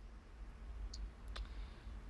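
Quiet pause over a steady low hum, with two faint clicks a little under half a second apart about a second in.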